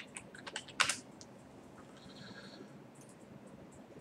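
Typing on a computer keyboard: a quick run of about half a dozen keystrokes in the first second, the last one the loudest, entering a search into the Windows Start menu.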